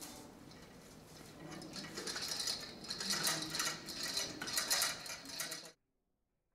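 Quick, irregular clinking and clattering of hard objects, growing louder about two seconds in, then cut off abruptly near the end.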